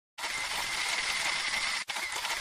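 Intro sound effect: a dense, mechanical-sounding rattle like a ratchet or gears, with a faint steady whistle-like tone in it. It breaks off for an instant near the end.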